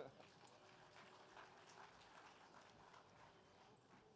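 Near silence: faint room tone, with the tail of a laugh right at the start.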